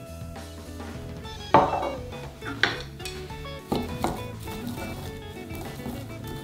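Wooden chopsticks knocking against a glass mixing bowl while tossing corn kernels, shredded shiso and flour into a tempura batter mix. There are a few sharp clinks, the loudest about a second and a half in, over background music.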